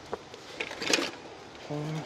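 Rustling and light knocks of interior parts being handled in a car's stripped rear seat area, with a louder rustle about a second in.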